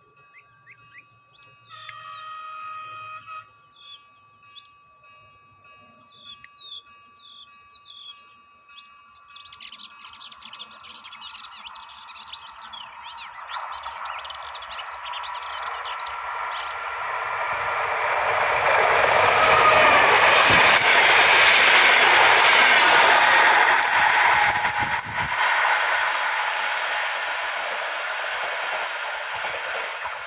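RENFE UT-470 electric multiple unit approaching and passing, its running and rail noise building for about ten seconds to a loud peak around twenty seconds in, then falling away. Birds chirp before the train arrives.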